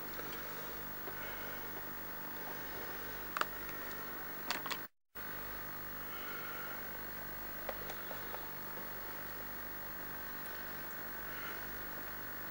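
Quiet, steady recording hum with a few faint steady tones and a couple of small clicks. It cuts out completely for a moment about five seconds in.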